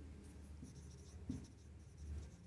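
Faint scratching of a marker pen writing on a whiteboard in short strokes.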